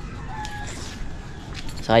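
A rooster crowing faintly, a single call lasting under a second.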